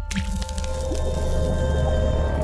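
Logo intro sting: a sudden hit at the start, then deep bass under held music tones, with a wet splat effect as the animated paint blob bursts.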